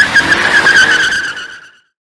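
Car tyres screeching: one high, wavering squeal that starts suddenly and fades away over about a second and a half.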